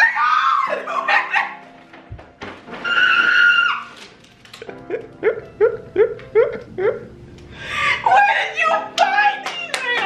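A woman shrieking and crying with emotion. There is one long high squeal about three seconds in, then a quick run of short rising sobbing cries, then excited shouting near the end, all over soft background music.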